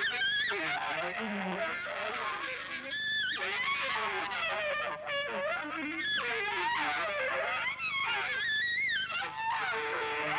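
Saxophone improvising free jazz, playing fast runs of notes that swoop up and down in pitch, with high, edgy tones.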